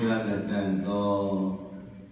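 A Buddhist monk's voice intoning a drawn-out, chant-like phrase on long held notes, trailing off near the end.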